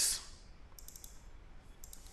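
A few faint, quick clicks from a computer being worked: a small cluster about a second in and another near the end.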